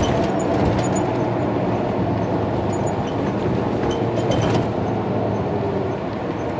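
Cabin noise inside a 2017 MCI J4500 coach under way: the Detroit Diesel DD13 engine running beneath a steady rush of road and tyre noise, with a few light clicks.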